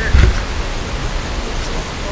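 Steady rushing noise of wind buffeting the camera's microphone, with a brief louder thump a moment after the start.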